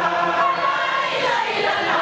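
A large group of voices chanting together without pause, a devotional group chant.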